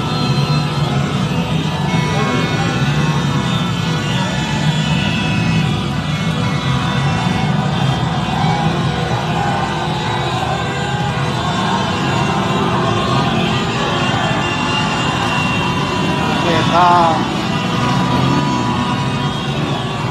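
Large street crowd celebrating a football victory: many voices, chanting and music blend into a steady din, with vehicles in the crowd. A louder wavering call rises above it about three-quarters of the way through.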